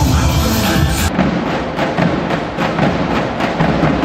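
Electronic dance music with a steady beat, which cuts off about a second in. It gives way to a group of davul drums beaten with sticks in a run of sharp strokes.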